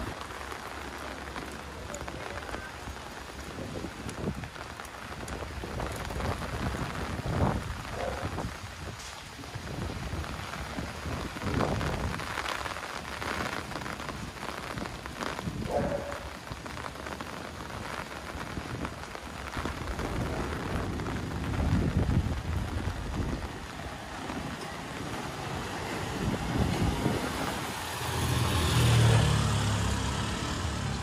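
Rain falling on a wet street, an even hiss that swells and fades, loudest near the end.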